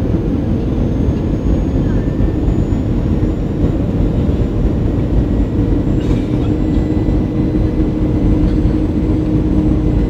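Airliner jet engines during a landing: a steady, loud low rumble with a held hum that grows stronger about halfway through.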